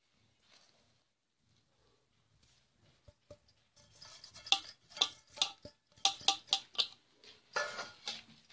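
Small bowl of spices knocked against a steel pot while being emptied onto mashed potato: after a nearly silent start, a run of quick light taps and clicks, about three a second, begins around the middle.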